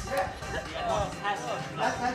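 A dog barking in short, high yips, about three times.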